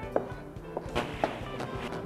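Knife dicing peaches on a cutting board: a handful of separate knocks, over background music.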